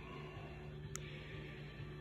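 Quiet room tone with a faint steady low hum, and one faint click about a second in.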